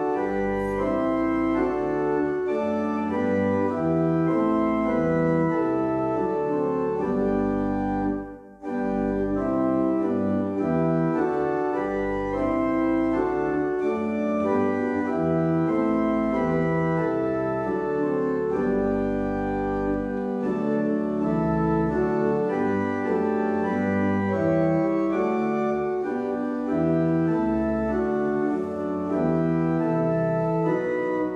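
Rodgers organ playing a hymn-based improvisation: full held chords that change step by step over low pedal bass notes. The sound lifts off briefly between phrases about eight seconds in.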